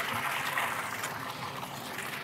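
Water jetting into a boat's bait well and churning the surface, a steady rushing splash that fades slightly.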